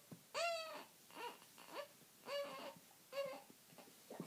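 Young infant fussing while held up to be burped: about five short, high-pitched cries, the first the loudest and falling in pitch, the rest fainter.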